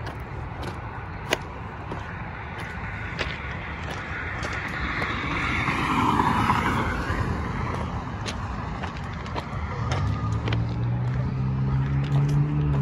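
Road traffic: a steady hum of tyre and engine noise, with a car passing close by that swells and fades, loudest about six seconds in. Near the end a deeper engine note from another vehicle comes in.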